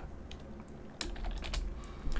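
Computer keyboard typing: a few sparse keystrokes, most of them from about a second in, as code is entered.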